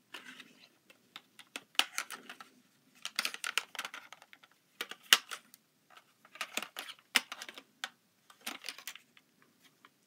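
Plastic cases of an Eton Elite Mini and a Tecsun PL-606 portable radio being handled together: irregular light clicks, taps and short scrapes as the two cases knock and slide against each other and against the fingers.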